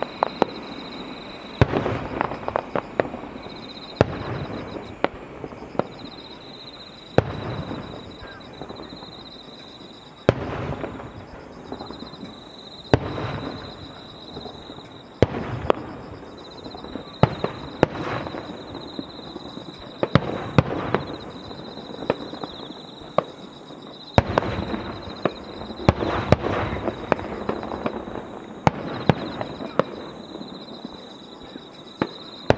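Aerial firework shells bursting in a display: a long run of sharp booms a second or two apart, each followed by crackling, with several bangs coming in quick succession near the end.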